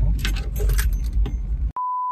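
Metallic jangling over the low rumble of a moving car's cabin. About three-quarters of the way in it cuts off abruptly to a steady test-card beep at one pitch.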